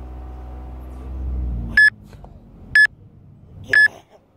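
Three short, high electronic beeps, evenly spaced about a second apart. Before them comes a steady low rumble that swells and then cuts off suddenly as the first beep sounds.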